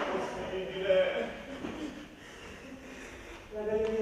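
A man speaking in short phrases: a spoken line in the first second or so, a quieter stretch, then another phrase near the end.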